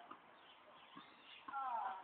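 A person's voice calling out briefly near the end, falling in pitch, over faint birds chirping.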